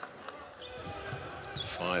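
Basketball bouncing on a hardwood court, scattered short thuds with faint voices in the arena and no crowd roar.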